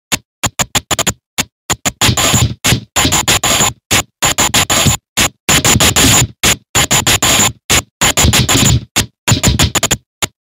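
Harsh electronic noise music: loud bursts of distorted noise chopped on and off in an irregular stutter, with hard cuts to silence between them several times a second. A thin high whine rides on some of the longer bursts.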